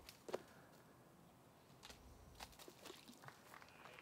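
Near silence: faint outdoor ambience with a few soft, scattered ticks and rustles.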